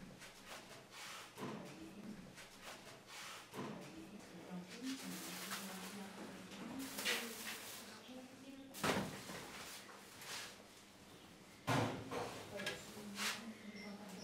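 Quiet handling sounds: grated lemon zest shaken out of a plastic bag and hands working it into flour in a mixer bowl, with a few sharp knocks, the loudest about nine seconds in and again near twelve seconds.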